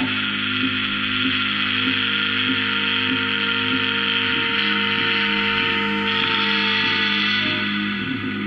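Experimental ambient drone music: layered sustained tones held steady, a hissing band of higher sound above them, and a soft regular pulse about every half second or so.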